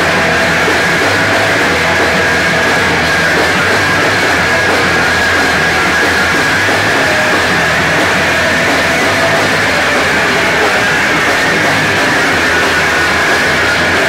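Punk rock band playing live at a steady, loud level, with electric guitars.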